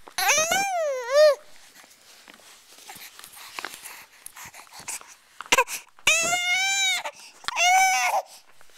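Infant's high-pitched vocal cries, three of them: a wavering one about a second long at the start, a longer arched one about six seconds in, and a short one at the very end, with faint clicks in between.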